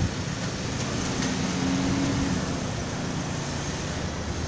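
Street traffic going by, with a passing car's low engine hum swelling and fading about a second in over a steady road noise.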